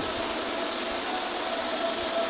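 Steady background hiss with a faint, thin steady hum in a brief pause between amplified speech.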